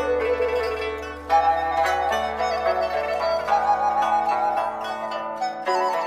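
Instrumental music with no singing: a melody of short notes with a wavering pitch over a low steady bass note that fades out near the end.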